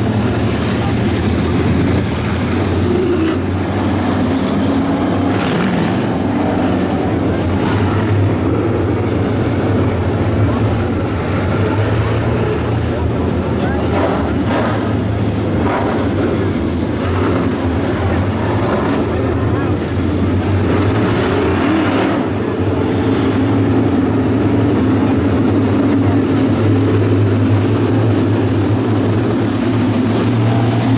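A field of 602 crate late model race cars, sealed GM 350 small-block V8s, running together on the track as a steady low engine drone with little revving, growing a little louder in the last third.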